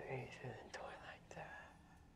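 Hushed, whispered speech with breathy sounds, dying away after about a second and a half.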